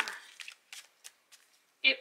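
Tarot cards being shuffled by hand, a few short, soft card clicks about a third of a second apart.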